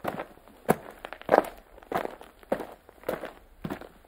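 Footsteps at a steady walking pace, a little under two steps a second, each step a short sharp tap.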